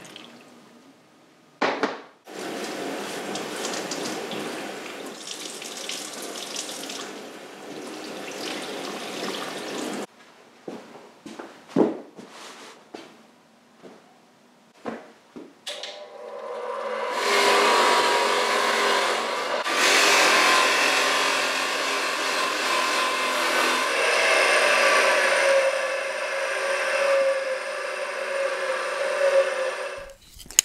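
Water running over a stainless motorcycle silencer as it is rinsed, then a few short knocks. From about 16 s a bench-mounted power tool runs steadily as the silencer is held against it to clean it up.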